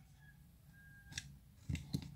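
Quiet room tone with a low hum and a few faint, short clicks in the second half.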